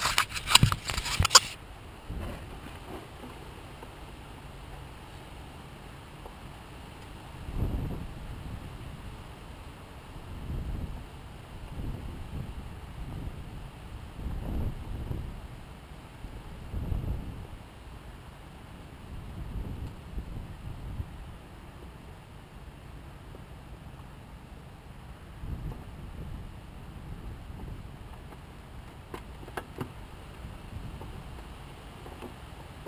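Wind buffeting the camera microphone in irregular low gusts, several of them over the stretch, with a couple of faint clicks near the end.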